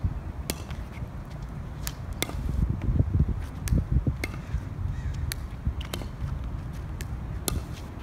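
Pickleball rally with homemade plywood paddles: the plastic ball pops sharply off the paddles and the asphalt court about once a second, at irregular intervals. Wind rumbles low on the microphone.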